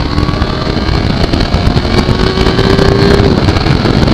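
Yamaha YZF-R3's 321 cc parallel-twin engine running as the motorcycle rides along, under a dense rush of wind and road noise on the helmet microphone. A steady engine tone holds and then drops away a little past three seconds in, while the overall noise builds.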